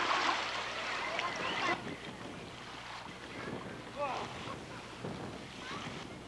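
Wind on a camcorder microphone and choppy lake water, a steady noisy hiss that drops suddenly to a quieter level about two seconds in. Faint distant voices come through now and then.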